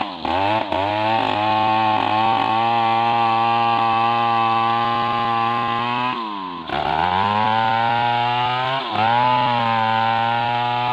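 A large Stihl chainsaw running at high revs with its bar buried in the trunk of a big medang tree, sawing into the wood. The engine note holds steady, briefly drops and picks up again twice, and dips slightly once more near the end.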